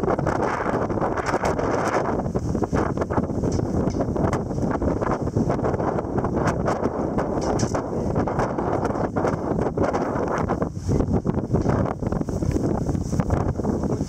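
Wind buffeting the microphone on the open deck of a sailing ship, a steady, flickering rush of noise with no clear pitch.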